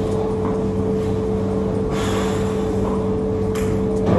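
A steady low hum, with a short breathy exhale, like a snort, about two seconds in.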